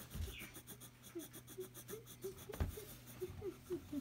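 A coloured pencil rubbing back and forth on a workbook page in quiet, even strokes. There is a single knock about two and a half seconds in, and a run of faint short squeaks through the second half.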